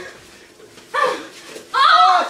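People's voices without clear words: a short exclamation about a second in, then a louder cry near the end.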